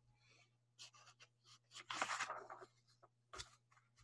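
Faint handling noises over near silence: soft scratching or rustling about a second in and again around two seconds, and a short soft knock near the end.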